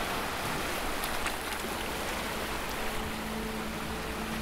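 A steady rain-like hiss from a background sound bed. Faint held low tones come in about halfway through.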